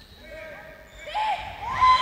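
Shouting voices in a sports hall during a handball match: a few short calls about a second in, then a loud, held shout starting near the end as a foul is called.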